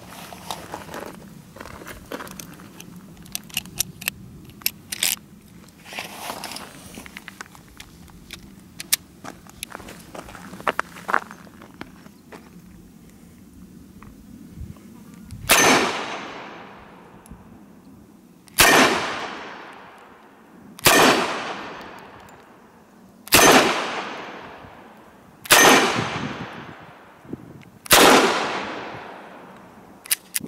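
Small metallic clicks and rattles as .38 Special cartridges are loaded into the cylinder of a Dan Wesson 715 .357 Magnum revolver. About fifteen seconds in, it fires six single shots two to three seconds apart, each echoing for over a second.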